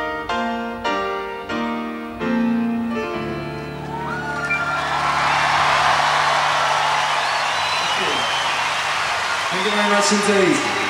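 Grand piano playing a slow run of struck chords, ending on a held chord about three seconds in. A large stadium crowd then cheers and applauds with whistles, swelling louder, and a voice comes in near the end.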